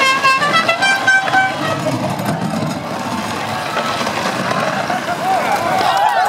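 Hard plastic wheels of Big Wheel tricycles rumbling down an asphalt street amid a shouting crowd. A horn toots a quick run of short notes in the first second and a half.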